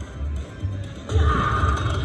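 Slot machine game music from a Buffalo video slot's free-games selection screen: a low pulsing beat that swells louder about a second in.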